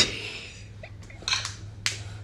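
A few scattered sharp hand claps: one loud clap at the start, then two more a little over a second later.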